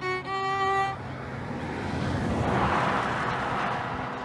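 Solo violin playing a short run of held notes that stops about a second in, followed by a rushing noise that swells and fades away.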